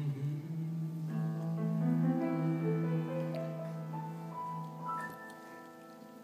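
Grand piano playing the song's closing bars: a low note held beneath a slow run of notes climbing upward one after another, each left ringing, fading toward the end.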